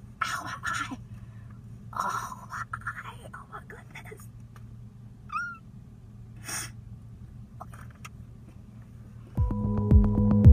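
A quiet stretch with a low steady hum, a few brief murmured voice sounds in the first three seconds, a short squeak about five seconds in and a click a second later. Background music comes back in just before the end.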